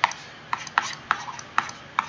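Stylus pen tapping on a tablet screen while writing by hand: a string of sharp, irregular clicks, about five in two seconds, each as the pen tip strikes the glass.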